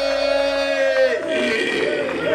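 A man's long drawn-out shout over a microphone and PA: one held note, falling slightly in pitch, that ends about a second in. Mixed voices and a shouted hype from the stage follow.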